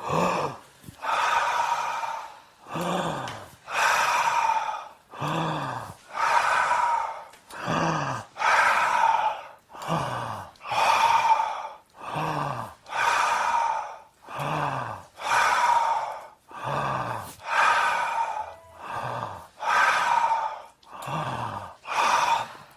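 Rhythmic forced breathing of a group breathing exercise: sharp, loud breaths about once a second, some with a slight voiced grunt.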